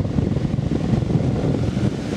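Götze & Jensen metal floor fan running, its airflow blowing straight into the microphone as a steady rushing noise.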